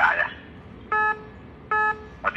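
Two identical short electronic beeps about three-quarters of a second apart, each a steady buzzy tone lasting about a quarter of a second.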